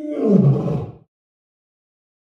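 A single loud roar, about a second long, falling in pitch as it ends, timed to a house cat's wide yawn.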